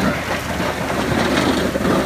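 A pickup truck's steel snowplow blade pushing snow and scraping along wet pavement, with the truck's engine running; a loud, steady rumbling scrape.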